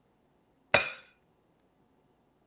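An egg rapped once against the rim of a glass mixing bowl to crack it: a single sharp knock with a brief ring.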